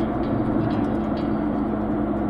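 Moving car heard from inside the cabin: a steady drone of engine and road noise with a constant low hum.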